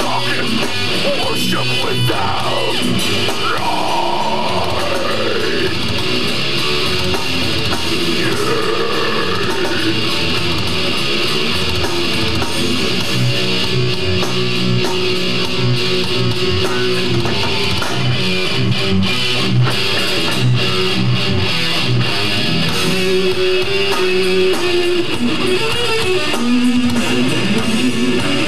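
Death metal band playing live: heavily distorted electric guitars, bass and drums, loud and dense, as picked up by a camcorder microphone in the crowd. A few seconds in, and again near ten seconds, guitar notes slide up and down in pitch; later a low end pulses in a steady rhythm.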